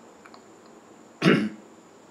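A single short, throat-clearing cough from a person, about a second and a quarter in, against quiet room tone.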